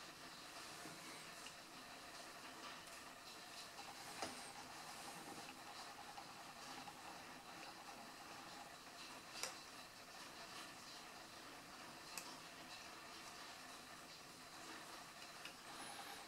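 Near silence: faint room hiss, with three small clicks spread through it.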